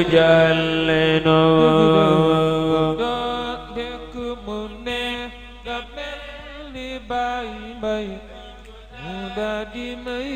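Male voice chanting an Islamic religious song (xassida) in Arabic and Wolof, holding a long note for about the first three seconds, then going on in quieter, shorter sung phrases.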